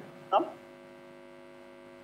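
Steady electrical hum on the remote call's audio line, with one short vocal sound about a third of a second in.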